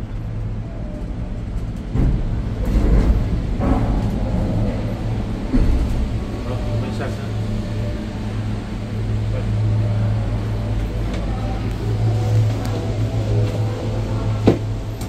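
Ngong Ping 360 gondola cabin being carried through the terminal station: a steady low machinery hum, with knocks and clanks from the cabin's hanger and the station track a couple of seconds in and again around six seconds.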